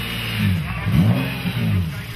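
BMW E36 race car's engine blipped, its revs rising and falling a couple of times and loudest about a second in.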